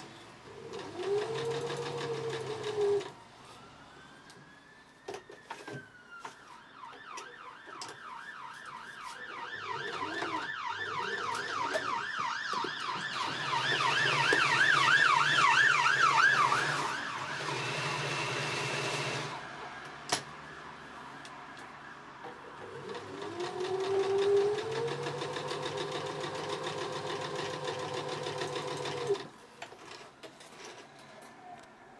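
Domestic electric sewing machine stitching in three runs, its motor whine rising as it speeds up at the start of each run. In the middle, a siren wails and then yelps rapidly in the background, loudest where it overlaps the stitching.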